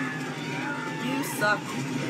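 Battle-scene soundtrack of a TV episode playing: a steady low rumble with voices over it, and a woman says "yeah" about a second and a half in.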